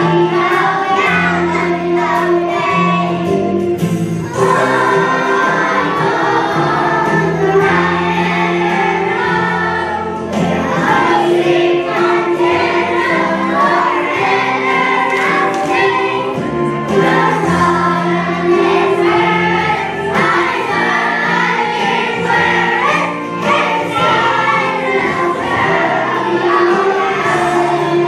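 Music: a choir of young children singing over an accompaniment with a steady bass line.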